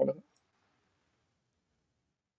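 The tail of a man's spoken word, then near silence with a faint computer mouse click.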